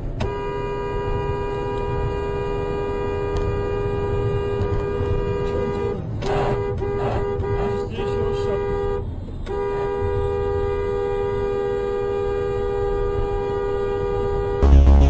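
Car horn held down in long, steady blasts, a warning at a truck swerving across the road; it breaks off briefly three times around the middle. Steady road and engine rumble runs underneath.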